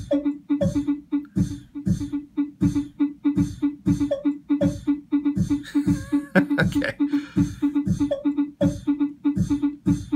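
Drum loop of sampled one-shots, including a mouth-made hi-hat, played by the ER-301 sound computer's sample players. A low kick falls in pitch about every two-thirds of a second, hissy hi-hat strokes come between, and a pitched pulse repeats with each step.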